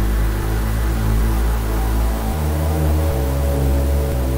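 Dark electronic synthesizer music: sustained low bass notes that change pitch every second or so, under a steady hiss-like wash, with no beat.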